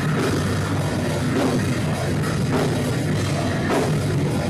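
Heavy metal music from a full band, with drum kit and guitars, playing loud and without a break.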